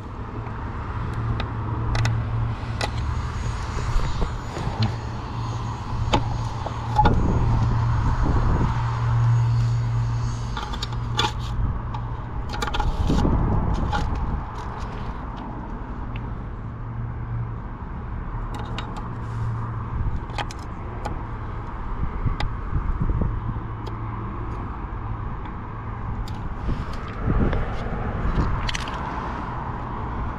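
Sharp clicks and scrapes as meter test probes and a sheet-metal electrical disconnect box are handled, over a steady low hum. There is a louder scrape near the end as the metal cover is fitted back onto the box.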